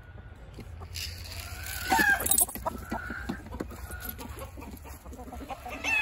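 Chickens clucking, with a loud call about two seconds in followed by a run of short clucks and calls.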